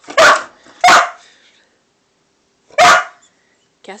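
A dog barks three times, loud and sharp: two barks in quick succession, then a third about two seconds later. The barks answer the word "squirrel" and are an excited, alert reaction to it.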